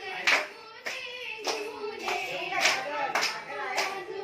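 A group of people clapping hands together in a steady rhythm, a little under two claps a second, over women's voices singing or calling along.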